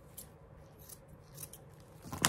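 Scissors snipping faintly a few times, short sharp cuts with pauses between them.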